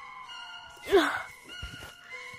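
Background music with held, sustained notes, and about a second in a short, loud vocal cry from a person.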